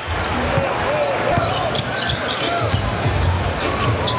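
Arena crowd noise during live basketball play, with a basketball being dribbled on the hardwood and short sneaker squeaks scattered through it.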